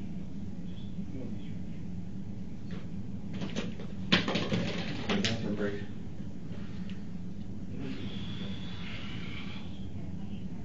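Thin plastic water bottle being handled, crackling and clicking for a couple of seconds, with the sharpest crack just after four seconds in, over a steady low room hum.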